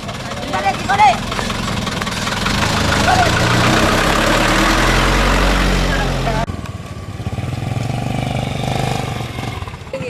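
A Toyota truck's engine running as the truck creeps past at close range, growing louder and deeper as it goes by, with a couple of short shouts about a second in. About six and a half seconds in, the sound cuts to a quieter engine of a vehicle further off.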